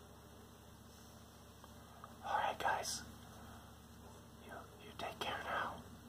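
A person whispering close to the microphone in a few short breathy bursts, about two seconds in and again near the end, over a faint steady hum.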